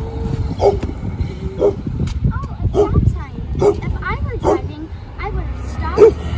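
An animal calling in short bursts, roughly one a second, over a steady low rumble.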